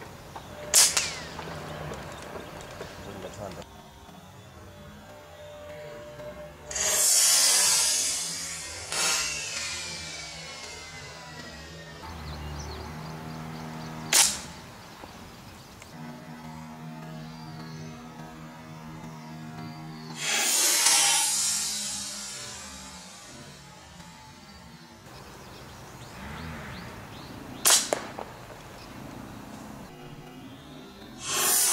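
Three sharp shots from an Artemis M22 PCP air rifle firing 23-grain Javelin pellets, spaced about thirteen seconds apart, over background music. Two longer rushing swells of noise fall between the shots.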